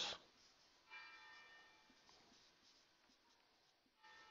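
A marker squeaking faintly on a whiteboard while writing. The squeak starts about a second in, holds several steady pitches and fades out over a second or so, leaving near silence.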